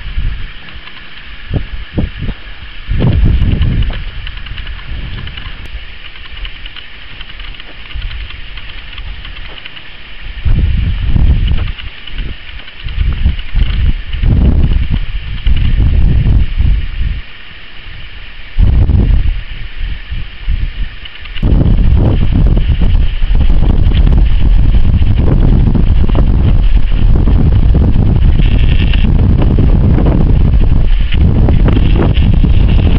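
Wind buffeting the camera microphone in gusts, turning into a continuous loud rumble from about two-thirds of the way in, over a steady high-pitched drone.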